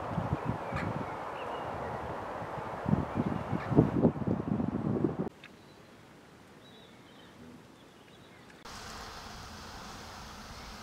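Wind buffeting the microphone and rustling the foliage, surging louder about three to five seconds in. Then an abrupt cut to a much quieter background with a few faint high chirps, and a steady hiss near the end.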